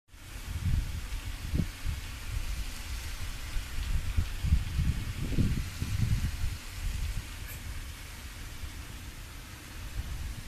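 Wind buffeting a phone's microphone in irregular low gusts over a steady outdoor hiss; the rumble eases off in the last few seconds.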